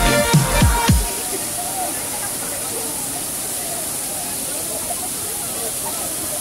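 Background music with a thumping electronic beat cuts off about a second in. Steady waterfall rush follows, with faint voices of people in the pool.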